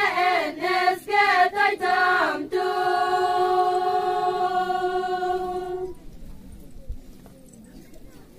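A group of women singing a folk song in unison: a few short phrases, then one long held note that ends about six seconds in, leaving a pause with only faint background sound.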